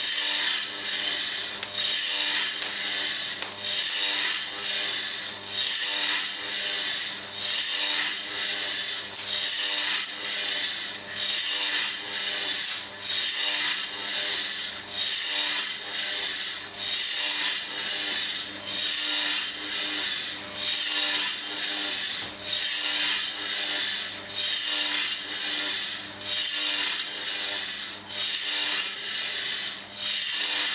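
Coffee beans tumbling in the rotating perforated stainless-steel drum of a Tiny Roaster home coffee roaster during a roast: a rhythmic rustling swish about four times every three seconds, with a steady low hum beneath it.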